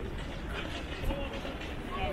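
Open-air city square ambience: a steady low rumble with scattered, indistinct voices of passers-by.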